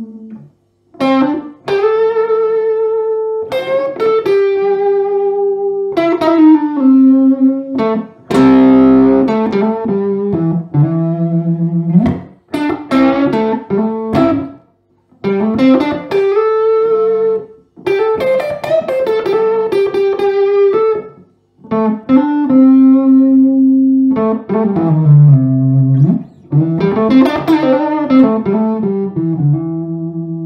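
Gibson Les Paul '50s Goldtop electric guitar with P90 pickups, amplified, played as single-note lead phrases with short pauses between them and string bends near the end.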